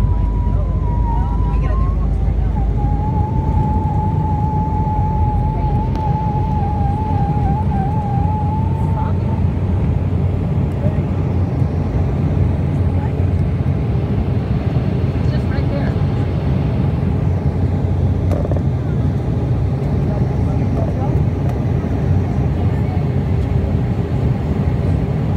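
Jet airliner cabin noise during takeoff: the engines at takeoff power give a loud, steady rumble. The deepest rumble drops away about three seconds in, as the wheels leave the runway, and the climb noise carries on evenly.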